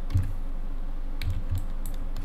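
A few scattered computer keyboard key presses and clicks, as hotkeys are used while working in 3D software, over a steady low hum.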